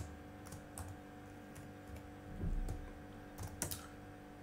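Computer keyboard being typed on: faint, scattered keystroke clicks a few at a time with short pauses between them, over a faint steady hum.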